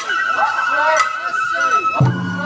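Sawara-bayashi festival music: a shinobue bamboo flute holds one long high note while a drum is struck twice, about a second apart. Overlapping voices run underneath.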